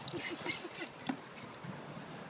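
Short, quick, faint gasps from a man just drenched with ice water, several a second and tailing off after about a second.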